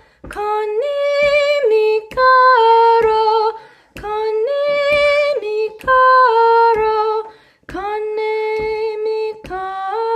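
A woman singing a Spanish-language song alone, without accompaniment, in slow phrases of held notes that step up and down, with short breaths between the phrases.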